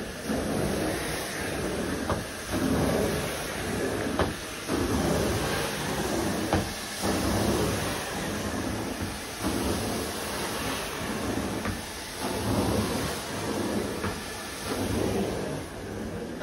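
Hot water extraction carpet wand pulled across carpet, its vacuum suction rushing steadily. The noise swells with each stroke and dips briefly every couple of seconds as each pass ends.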